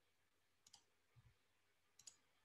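Near silence: room tone, with one faint click under a second in and a soft low thump shortly after.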